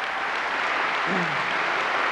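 Audience applauding steadily, with a short falling voice sound about halfway through.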